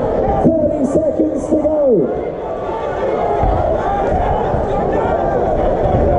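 Crowd of spectators chattering and shouting around a boxing ring, with a few loud yells in the first two seconds.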